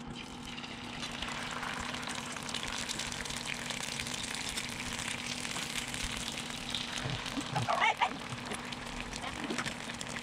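Eggs frying in oil in a small pan on an induction cooktop: a steady sizzle that builds just after the start, with a sharp tap about eight seconds in as another egg goes into the pan.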